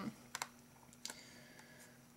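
A few faint, short clicks, a pair about a third of a second in and another about a second in, over quiet room tone with a low steady hum.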